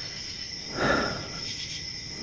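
Crickets chirping steadily, a continuous high-pitched trill.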